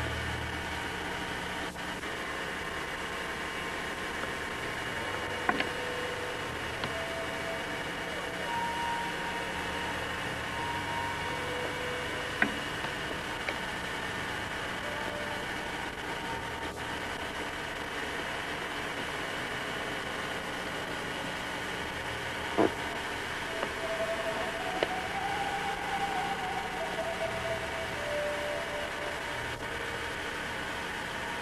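Steady hiss and low hum from a consumer camcorder's own recording noise, broken by a few faint clicks and some brief faint tones.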